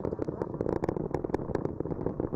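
Space Launch System rocket in ascent, its two solid rocket boosters and four RS-25 core stage engines firing: a continuous rumble with a dense, irregular crackle.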